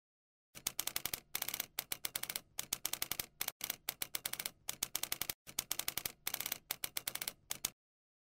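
Typewriter-style typing sound effect: rapid key clicks in short runs broken by brief pauses, starting about half a second in and stopping just before the end, as on-screen text types itself out.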